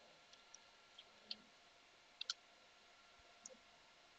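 Computer keyboard keys pressed now and then: a handful of faint, separate clicks over near silence.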